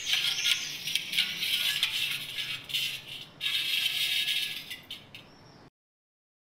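Pieces of mirror glass clinking and rattling against each other in a run of crisp, irregular clinks, with a short break about three and a half seconds in, cutting off suddenly near the end.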